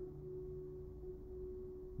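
Faint, steady sustained pure tone, a background drone held on one pitch, with a low hum beneath it.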